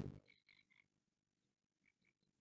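Near silence on a video call. A loud sound cuts off within the first fraction of a second, and after it come only a few faint, short high blips.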